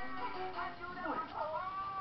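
Music playing, with a young pet's cry from about a second in that falls and then rises in pitch and is held to the end.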